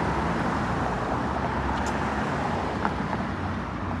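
Steady road traffic noise from a busy multi-lane street, cars going by with a continuous hum of tyres and engines.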